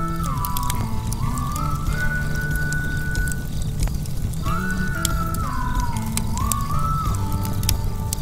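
Outro music: a high melody that slides up and down between notes over low held bass notes, its phrase repeating after about five seconds.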